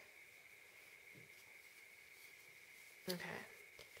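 Near silence: room tone with a faint steady high-pitched whine.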